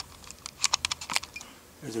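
A quick run of light, sharp clicks and taps of hard plastic being handled, about eight in half a second, around the door's inner handle and latch-cable mechanism.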